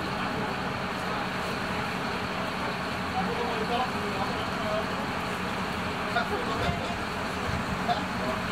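Steady hum of an idling fire engine under indistinct chatter of people standing nearby, with a couple of short knocks in the last two seconds.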